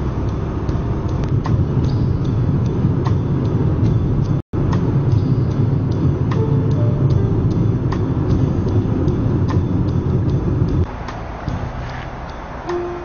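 Steady low road rumble, like a car driving, with music playing over it and a brief break to silence about four seconds in. Near the end the rumble falls away and the music carries on alone.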